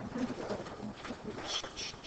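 Faint, low murmured voices.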